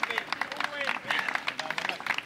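Scattered clapping from spectators, many quick irregular claps, with faint voices calling out.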